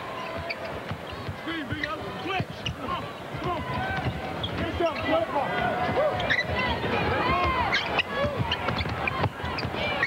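Live basketball play on a hardwood court: a ball bouncing and sneakers squeaking in short squeals, over arena crowd noise with scattered voices.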